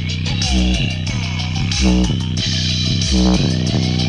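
Bass-heavy electronic music played loud through a small 3-inch Logitech woofer driver, with deep bass notes pulsing in a steady beat. The stereo's extra-bass mode is on and the little driver is pushed close to its excursion limits.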